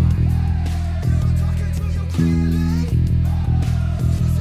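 Fender Precision electric bass playing repeated open low E notes in time with a rock song's drums, changing to a higher held note for under a second about halfway through.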